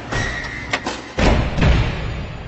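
Sound-design sting for an animated logo reveal: a noisy swish with a held high tone, a couple of sharp clicks, then two heavy low hits in the second half, the last one dying away slowly.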